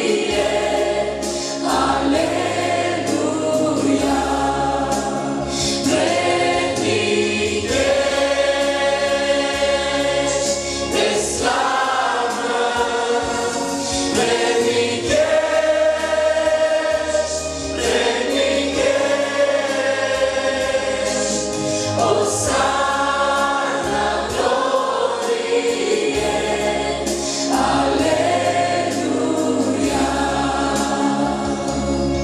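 Worship team of men and women singing together into microphones, a Romanian worship song with the congregation joining in. Amplified, with instrumental accompaniment and a bass line under the voices.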